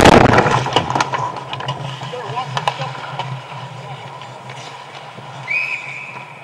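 Ice hockey play heard close up from a goalie's mask: a loud rushing scrape or impact at the start, then scattered sharp clicks of sticks and skates on the ice over a steady arena hum. A referee's whistle is blown once about five and a half seconds in, held about a second.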